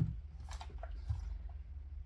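Fabric and fusible interfacing being handled and smoothed flat on a table: a short knock right at the start, then a few soft rustles and light taps, over a low steady hum.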